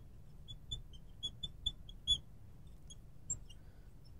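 Marker squeaking on a glass lightboard as words are written: a quick run of short, high squeaks in the first half, then a few scattered ones.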